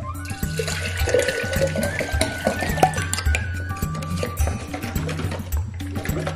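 Water pouring into a glass mason jar, the tone rising in pitch as the jar fills, then stopping shortly before the end, over background music.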